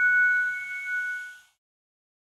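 A ringing chime note, the last note of a short musical intro jingle. It holds steady, then fades out about a second and a half in.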